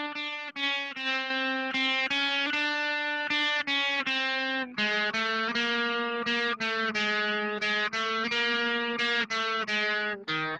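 Electric guitar playing a three-finger warm-up exercise: single notes picked up and down, about two to three a second. One pitch repeats for the first half, then it drops to a lower note a little before halfway.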